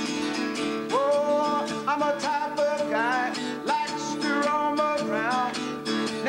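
A man singing to his own strummed acoustic-electric guitar, a rock-and-roll tune played solo. The guitar strums steadily throughout, and the voice comes in about a second in with sliding, bent notes.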